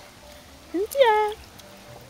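A person's high, sing-song voice calling out once about a second in: a short rising syllable, then a longer one that falls and is held briefly, like the 'bye-bye' that follows.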